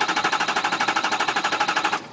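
Ford 6.0 Power Stroke V8 diesel turning over on its starter with the key off, so it cranks without firing: a fast, even chugging of about a dozen beats a second that stops at the very end. The crank is even, with no flare-ups, a sign of even compression across the cylinders and no base engine problem.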